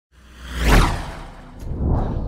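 A whoosh sound effect for a graphic transition: a noisy swell with a deep rumble underneath that peaks under a second in and fades, followed by a smaller swell near the end.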